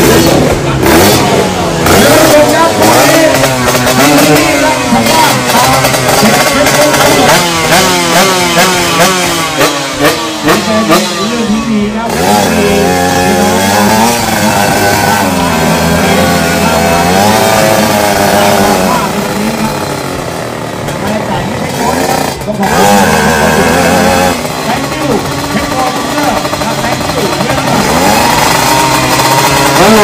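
Drag-racing motorcycles revving at the start line, the engine pitch rising and falling in quick repeated blips, with two abrupt breaks in the sound about 12 and 22 seconds in.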